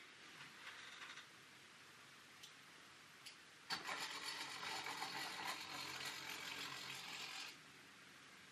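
Small electric motor of a model engine shed's roller door running steadily for about four seconds as the door winds up, starting suddenly a little under four seconds in and cutting off shortly before the end. A few faint clicks come before it.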